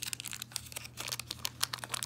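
Foil-lined wrapper of a Leaf Series 1 baseball card pack being peeled and torn open by hand, a quick run of crinkles and crackles.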